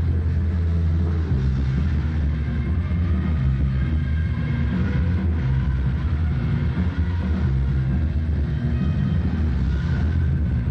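Booming bass and rumble of a loud amplified rock band playing on a nearby stage, with held mid-range notes of a soprano saxophone being practised close by over it.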